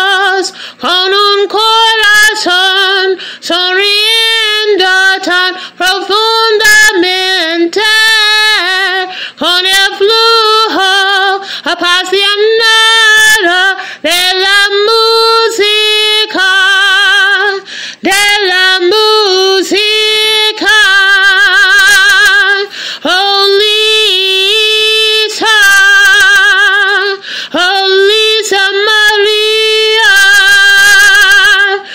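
A woman singing alone without accompaniment in short phrases, some notes held with vibrato.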